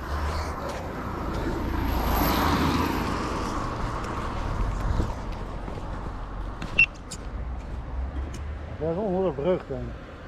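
Traffic noise from a car passing on the road, swelling and fading over the first few seconds, over a low rumble of wind on the microphone. A voice calls out near the end.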